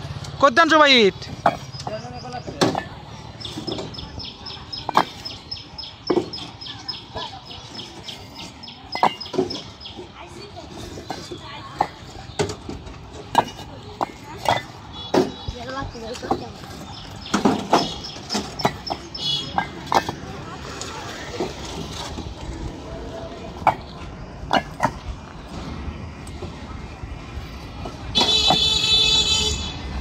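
Fired clay bricks clacking and clinking against one another as they are handled and set into a stack by hand, many sharp knocks at an uneven pace, some with a short high ring.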